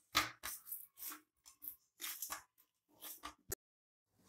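Hands kneading a ball of dough on a stainless steel plate: a series of short, irregular pressing and pushing strokes with pauses between them, and a short sharp click near the end.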